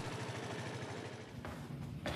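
A motor scooter's small engine running with a rapid, even pulse as it passes close by, over street noise.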